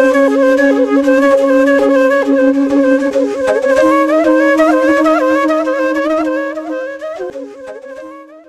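Flute music: an ornamented, sliding melody played over a sustained drone. The drone steps up in pitch about four seconds in, and the music fades near the end.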